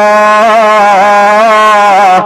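A man's voice holding one long sung note, its pitch wavering slightly, in the drawn-out chanting style of Malayalam religious preaching, over a steady low hum.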